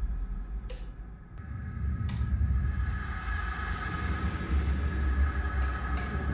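A few sharp clicks of a wall light switch and a ceiling fan's pull chain being worked, over a steady low rumble in a small room.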